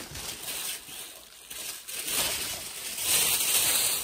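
Rustling and crinkling of packaging or craft material being handled, growing louder about three seconds in.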